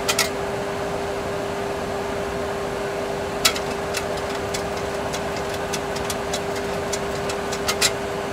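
Steady cockpit background noise in a Boeing 737 Classic flight simulator: an even rushing hum with a constant mid-pitched tone underneath. A few sharp clicks from cockpit controls being worked come through it, one just after the start, two around the middle and a quick pair near the end.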